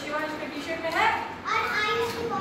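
Young children speaking in high-pitched voices.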